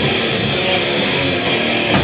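Hardcore punk band playing live: distorted electric guitars and a drum kit, loud and dense, with a sharp hit right at the end.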